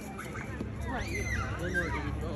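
Spectators' voices at a youth ballgame, high and gliding in pitch, strongest from about a second in, over a low steady background rumble.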